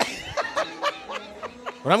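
A person chuckling softly in short bursts, with speech starting again near the end.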